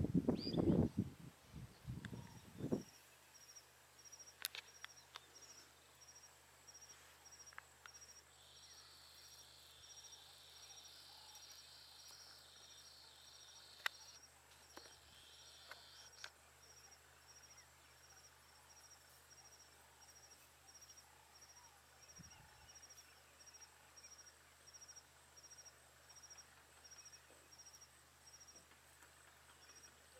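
Faint outdoor ambience with a regular high chirp about twice a second and, for several seconds near the middle, a higher continuous buzzing call. Loud rumbling noise fills the first few seconds.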